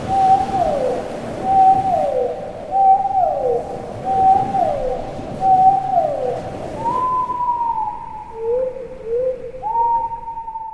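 Dolphin whistle calls: five near-identical calls about a second apart, each holding a note and then sliding down in pitch. Near the end, two longer high whistles that fall slowly, with two short lower notes between them.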